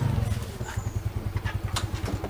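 Small motor scooter engine putting at low revs as the rider pulls up and stops, a steady pulse of roughly a dozen beats a second that fades toward the end.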